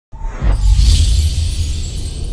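Logo intro music sting: a heavy low bass sound with a high hissing sweep rising in about half a second in and fading out before the end.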